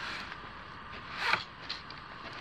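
Fishing reel whirring in short bursts as line runs through it, the longest swelling to a peak about a second in, while a hooked fish is played.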